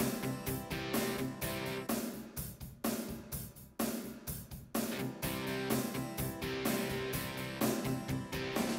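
Yamaha Clavinova CSP 'Contemp Rock' auto-accompaniment style playing at tempo 126: a drum kit with electric guitar and bass. Twice around the middle the guitar and bass parts drop out while the drums carry on, as band members are switched off in the style's part settings.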